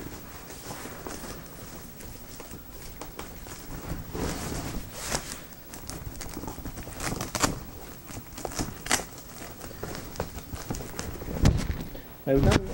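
Fabric of a strip softbox and its honeycomb grid rustling and scuffing as the grid's Velcro edge is pressed into place, with irregular light knocks from handling the box. A louder thump comes near the end.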